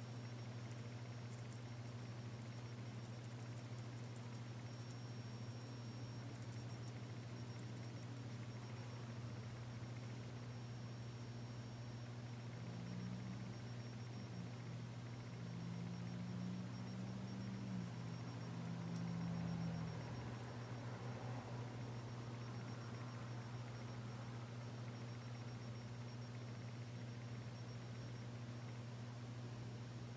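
Steady low electrical hum with a faint thin high-pitched whine above it. A few short, flat, slightly higher hum tones come and go about halfway through.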